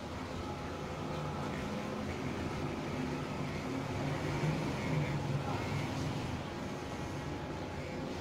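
Steady background noise with faint, indistinct voices talking in the distance.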